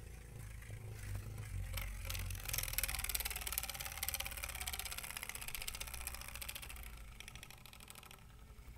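A Takara Dragoon MSUV Beyblade spinning on a stadium floor: a faint fast rattling whir. It grows louder from about two seconds in and fades toward the end as the top winds down, nearly out of spin.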